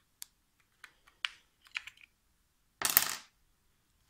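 Two batteries being pried out of a TV remote's battery compartment: a scatter of light plastic-and-metal clicks, then a louder clatter about three seconds in as the batteries come free.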